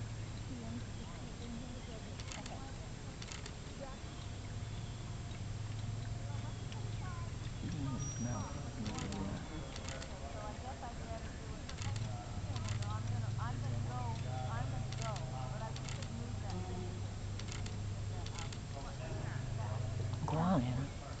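Faint, indistinct voices over a steady low hum, with scattered light clicks about a second apart.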